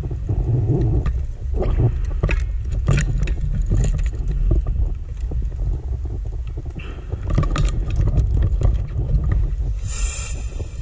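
Underwater camera audio from a scuba dive: a steady low rumble, with two spells of crackling bubble noise, about a second and a half in and again about seven seconds in, typical of a diver's exhaled bubbles.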